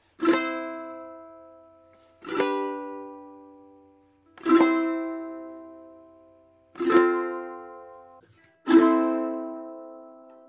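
Ukulele strummed one chord at a time, five chords about two seconds apart, each left to ring out and die away. Heard through a Zoom call with Original Sound switched on.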